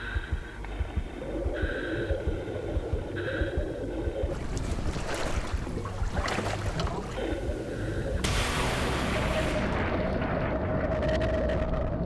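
Sea and boat noise: water rushing and splashing with wind, growing fuller about eight seconds in, when a steady held tone enters.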